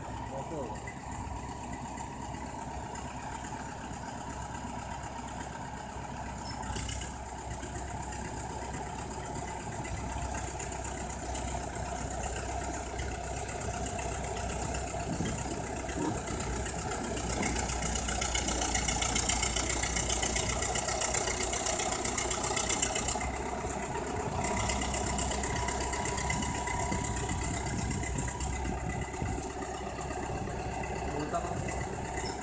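Crawler bulldozer's diesel engine running as the machine pushes a heap of wet mud, getting louder from about halfway through as it closes in.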